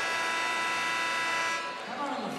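Basketball arena horn sounding one long, steady blast that fades out near the end. It marks the stoppage of play for a media timeout.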